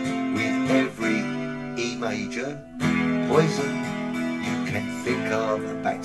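Takamine acoustic guitar strummed with a steady down-up pattern, the chords ringing between strokes.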